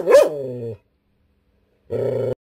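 Jindo dog grumbling and growl-barking in irritation at another dog: a loud, pitched call that swoops up and down in pitch just after the start and stops before a second in. A second, shorter, steady growl comes near the end and cuts off abruptly.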